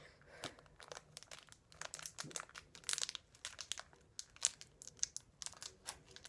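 A small clear plastic wrapper crinkling and crackling in fingers as it is worked at and pulled to tear it open. The crackles are irregular, loudest about three seconds in and again around four and a half seconds. The packet is very hard to open.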